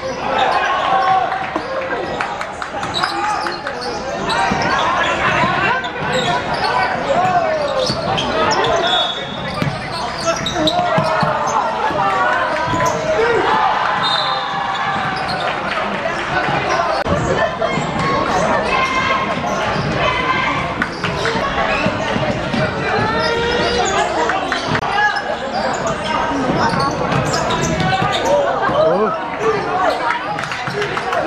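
Basketball game in an echoing indoor sports hall: the ball bouncing on the court, sneakers squeaking, and players and spectators calling out throughout.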